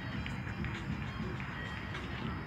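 Faint background music over a low, steady rumble.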